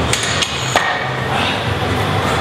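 Metal gym weights clanking as they are handled and loaded: three sharp knocks in the first second, the last one ringing briefly.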